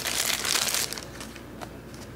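Plastic wrapping on a bundle of prop banknotes crinkling as fingers work at it to open it: dense crackling for about the first second, then fainter.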